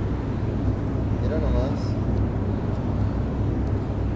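A steady low rumble, with a person's voice briefly in the background about a second and a half in.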